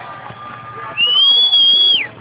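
A loud, shrill human whistle from the crowd, starting about halfway in and held steadily for about a second before dropping off at the end, over faint background voices.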